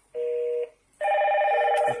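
Hikvision IP intercom call to flat three: a short electronic two-tone beep, then about a second in the indoor video monitor starts ringing with a steady multi-tone ringtone, louder than the beep.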